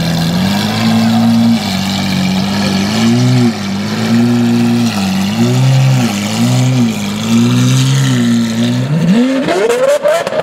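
Lamborghini Aventador V12 idling, then revved in a string of short blips. Near the end the revs climb steeply as the car accelerates away.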